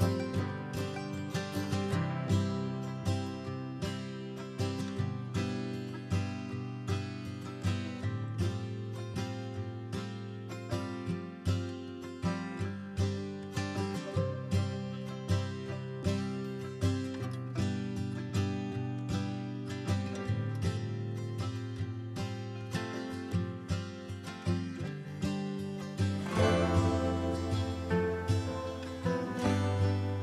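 Background music: a plucked acoustic guitar track with a steady rhythm.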